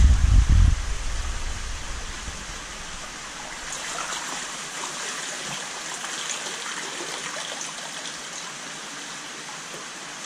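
Water splashing in the first second as a fish is let go into an aquarium tank, then a steady trickle with small, crackling splashes as the water settles.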